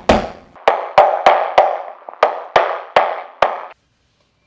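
Espresso portafilter being rapped repeatedly against a knock box to knock out the spent coffee puck: about nine sharp knocks, each with a short ring, with a brief pause midway. The knocks stop just before the end.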